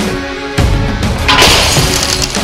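Background music, then about a second and a half in a sudden loud crash-and-shatter sound effect of the kind used in edited comedy cutaways.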